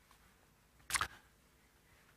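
Near-silent room tone, broken once about a second in by a single brief, soft noise.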